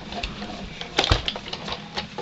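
Hand-cranked die-cutting and embossing machine pulling a stacked plate sandwich through its rollers, with mechanical clicking and a loud knock about a second in.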